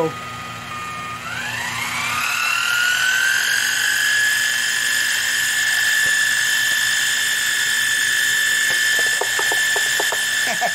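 Milling machine spindle whining as it speeds up: the pitch rises over a couple of seconds starting about a second in, then holds as a steady high whine while the cutter spins over the connecting rod cap.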